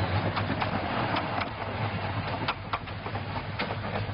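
Miniature railway train running past with its coaches, a steady low hum under the noise of the wheels on the track, and irregular clicks as the wheels pass over the rail joints.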